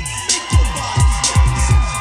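A hip-hop music track playing in a hall. Its beat is a quick run of falling bass sweeps with sharp high percussion hits.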